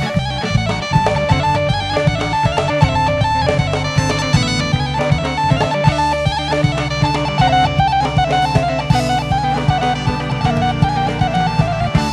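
Bulgarian folk band music: a fast, ornamented melody over a steady bass and beat, playing without a break.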